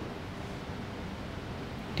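Steady, even background hiss of room noise, with no distinct events.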